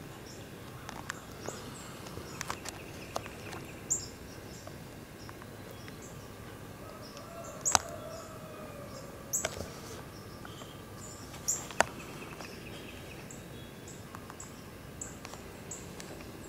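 Faint woodland ambience as picked up by a low-quality camera: a steady hiss with short, high bird chirps scattered throughout, and three sharp clicks about 8, 9.5 and 12 seconds in.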